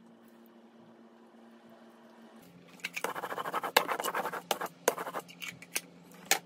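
Crumbs being swept and wiped off a desktop by hand: about two seconds of scratchy scraping starting around halfway in, with a few light knocks on the desk near the end.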